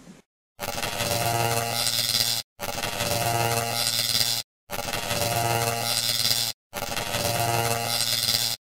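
Outro sound: a buzzy synthesized clip about two seconds long, played four times in a row with short breaks between. It starts about half a second in.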